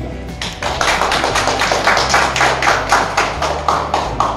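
A small group of people applauding, the claps starting about half a second in and running on fast and even, over background music.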